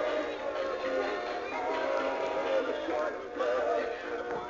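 Animatronic singing fish wall-plaque toys playing a song with a synthetic-sounding male singing voice through their small speakers; the sound is thin, with no bass.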